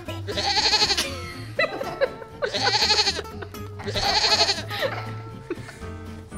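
Three goat bleats, each under a second and about two seconds apart, over upbeat background music.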